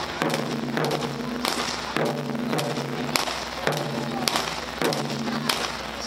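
Ensemble of Japanese taiko barrel drums (nagado-daiko) struck together with wooden bachi in a steady beat, a heavy hit about every two-thirds of a second, each hit ringing on with a deep tone.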